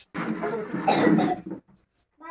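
A person coughing: one harsh cough in two swells, lasting about a second and a half.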